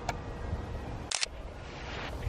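A single camera shutter click a little past one second in, over a steady low rumble of outdoor background noise.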